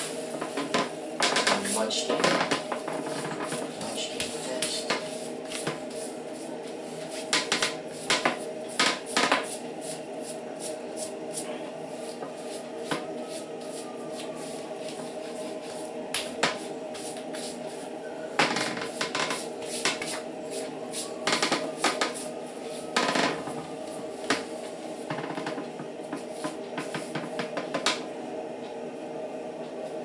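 Electric hair clipper running with a steady buzz while cutting a toddler's hair, with scattered clicks and taps over it.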